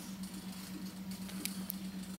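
Quiet room tone: a steady low hum, with two faint ticks near the end.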